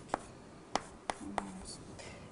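Writing on a lecture board: a few sharp taps about half a second apart as strokes are made.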